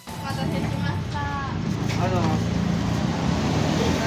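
Street ambience: a steady low traffic rumble, with short snatches of voices near the start and about two seconds in.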